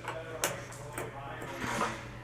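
Faint metal clicks of a hand tool tightening the bolt on a tonneau cover's rear bed-rail clamp, with one sharper click about half a second in.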